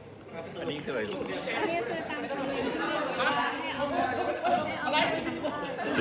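People talking, several voices overlapping in casual chatter.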